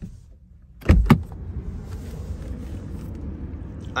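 Two sharp knocks a fraction of a second apart about a second in, then a steady low rumbling noise.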